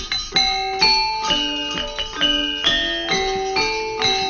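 Gamelan bronze metallophones playing a melody: struck notes ringing on and overlapping, about two a second.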